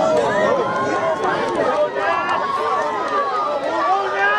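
Sideline spectators at a rugby sevens match shouting and calling out, many voices overlapping, as a player breaks away on a run.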